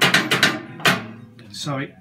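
A quick series of about six sharp metallic knocks in the first second, each ringing briefly. They are most likely the foot working the lathe's foot brake bar.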